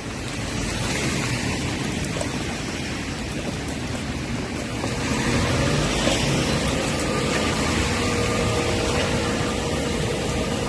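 Steady rumbling background noise of a busy market, with no distinct events. A faint steady hum joins about halfway through.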